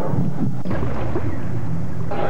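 A deep rumble with a steady hiss over it, setting in sharply about two-thirds of a second in and taking over from the soundtrack music.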